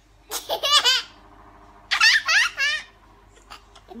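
High-pitched laughter in two bouts: one just after the start and another about two seconds in.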